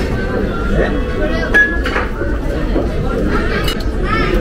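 Busy restaurant dining room: steady background chatter with dishes and cutlery clinking, including a few sharp clinks and one short ring about a second and a half in.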